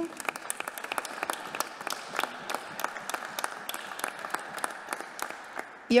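Audience applause in a council chamber: many hands clapping steadily, thinning out slightly just before the speaker resumes.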